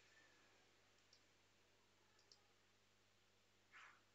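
Near silence: room tone with a few faint computer mouse clicks, one about a second in and a quick pair a little after two seconds, and a slightly louder short sound near the end.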